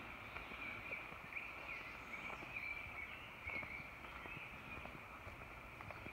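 Faint woodland ambience: a steady high-pitched chorus of distant birds and insects, with a few soft footsteps on a leaf-littered dirt trail.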